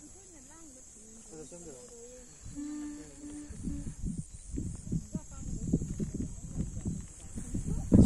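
Faint distant voices talking over a steady high drone of insects. From about halfway, wind buffets the microphone with low thumps.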